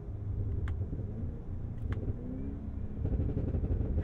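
Supercharged 6.2-litre V8 of a Cadillac Escalade V on overrun as the SUV coasts off the throttle: a steady low exhaust rumble with two sharp pops a little over a second apart.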